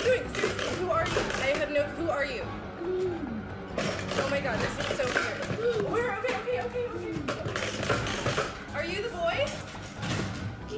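Voices crying out and exclaiming without clear words, over background music.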